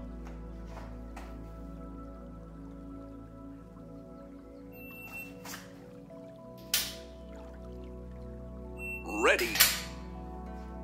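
A shot-timer app's short electronic start beep about halfway through, then, two seconds later, a single sharp click of a pistol trigger dry-fired on an empty gun, over steady background music. Near the end come another short beep and a louder sharp sound.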